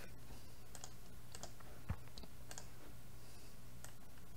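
Faint clicks of a computer mouse button, several coming in quick pairs, scattered through the moment, with one duller knock a little before two seconds in. A low steady hum runs underneath.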